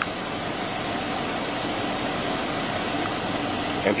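Parked Ford police SUV idling: a steady engine sound that does not change.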